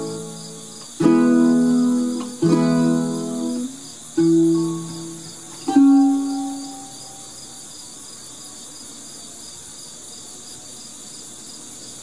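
Ukulele playing its closing chords: four strummed chords, each left to ring, the last fading out about seven seconds in. Under them, and alone after them, a steady high pulsing chirp of insects.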